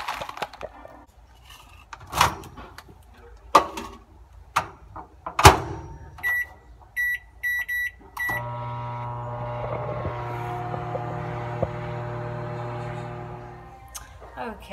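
Microwave oven: a few knocks and clicks as its door is handled, then five short keypad beeps, then the oven starting and running with a steady hum that fades out near the end.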